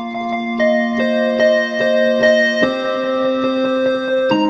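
Electronic keyboard on a square-lead synth patch playing a melody of quick repeated notes over a held left-hand two-note chord. The chord changes about two-thirds of the way in.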